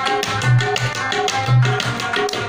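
Instrumental Pashto folk music: a rubab plucked in rapid strokes over a tabla, whose larger drum gives deep bass strokes roughly twice a second.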